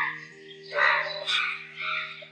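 About four short animal calls in quick succession, the loudest a little under a second in, over soft sustained background music.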